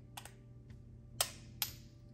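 A few light clicks from handling a perfume travel spray and its magnetic cap; the two sharpest come a little over a second in.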